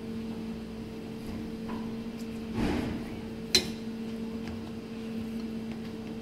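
Steady hum of kitchen equipment, with quiet handling noise of a knife trimming a pork tenderloin on a plastic cutting board and one sharp click about three and a half seconds in.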